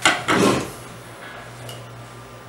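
A small wooden block knocked down and slid across a wooden tabletop. There is a sharp knock and then a short scraping rustle, all within the first second.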